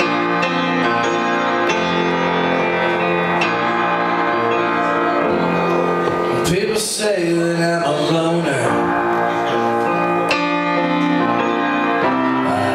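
Upright piano played live in sustained chords, struck afresh every second or two. A man's singing voice comes in over the piano for a few seconds about halfway through.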